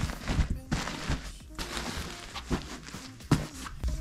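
Fabric rustling and handling noise as a knitted cushion is straightened on an armchair, with a few light thumps and knocks, the sharpest one near the end.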